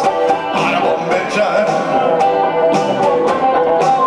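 Chapman Stick played live in a busy instrumental passage: many ringing tapped notes at once, with sharp percussive hits in a loose rhythm through it.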